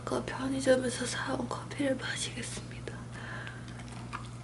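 A woman speaking softly, in a near-whisper close to the microphone, for the first two and a half seconds. After that only a faint low steady hum remains.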